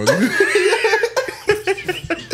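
Men laughing heartily, breaking into short choppy bursts in the second half.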